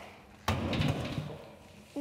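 A single sharp thump about half a second in, followed by a low rumble that dies away over about a second.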